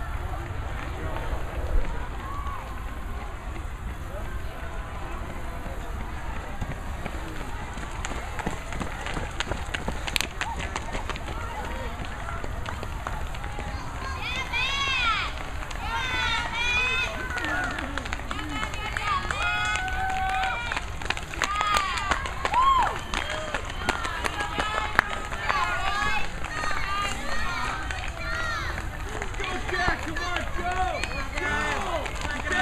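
Spectators yelling and cheering high-pitched calls of encouragement to approaching cross-country runners, starting about halfway through and continuing to the end, over low wind rumble on the microphone.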